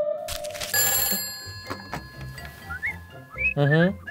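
A telephone bell rings once about a second in, a bright ring whose tone fades over the next couple of seconds.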